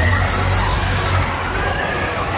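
A Musik Express fairground ride running, with a loud hiss of a fog blast over a deep low hum; both drop away about one and a half seconds in.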